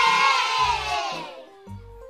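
A group of children's voices cheering together over a children's-song backing beat. The cheer slides down in pitch and fades out about a second and a half in, leaving a light music melody.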